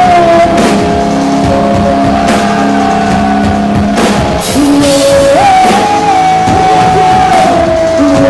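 Live rock band playing loudly, with a female singer holding long sung notes that slide up into each new note, over bass guitar and drums.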